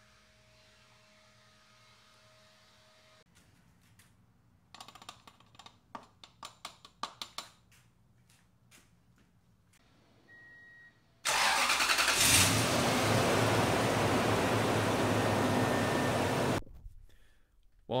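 A Toyota truck's 4.7-litre V8 engine starts about eleven seconds in, then runs steadily for about five seconds before it is switched off. Before it come a run of light clicks and knocks and a short beep.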